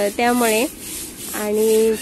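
A stiff-bristled broom scrubbing a wet paved floor: a rough, scratchy rubbing, heard under a woman's talking voice.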